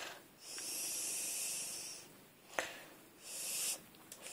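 Cat chirping with a breathy, toneless sound: one long chirp about half a second in and a short one near the end, with a sharp click between them.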